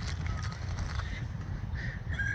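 Distant bird calls: a short faint call early on and another starting near the end, over a low steady rumble.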